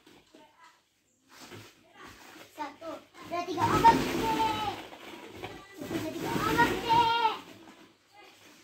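A young child's voice calling out twice in play, two long high-pitched squeals about three and six seconds in.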